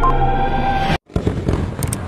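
Electronic countdown music, a sustained synth drone with a short beep, cuts off about halfway through. A fireworks sound effect follows: a quick run of bangs and crackles that fades.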